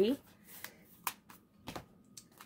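A paper sticker book being handled and set down on a wooden tabletop: a few short, light taps and rustles.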